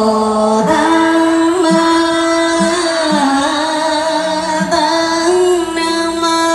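A woman's voice singing slow devotional music in long held notes that glide gently from pitch to pitch, with a second line of accompaniment sounding beneath it.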